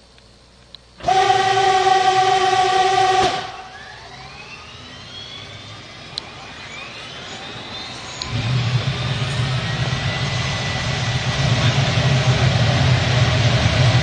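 Start-up of a captured tank's diesel engine: a loud steady tone of several pitches for about two seconds, then a rising whine as the engine is turned over. About eight seconds in the engine catches and runs with a low rumble that grows louder.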